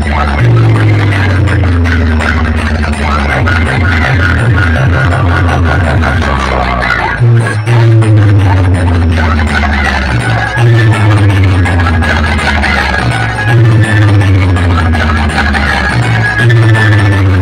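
Bass-heavy electronic dance music from a towering DJ speaker stack, played very loud, with a deep steady bass and a falling synth tone that repeats every two to three seconds.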